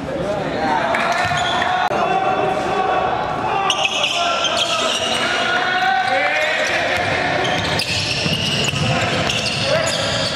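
Game sound of an indoor basketball game: the ball bouncing on the hardwood court among players' footfalls, with players and onlookers calling out. It all echoes in a large gym.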